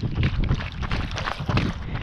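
Wind buffeting the microphone of a handheld camera during a run, a low rumbling gusty noise, with irregular knocks of running footsteps and gear jostling through it.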